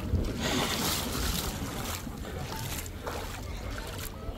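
Wind buffeting the microphone over the soft wash of shallow sea water, with brief splashy swishes of water about half a second to a second and a half in and again near three seconds, as someone wades.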